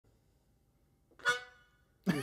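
A single short harmonica note, about a second in, that swells up and is broken off within half a second: a tentative false start before the tune.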